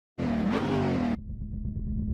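Intro sound effect of a car, with engine and squealing tyres, lasting about a second and cutting off suddenly. A low, steady rumble follows.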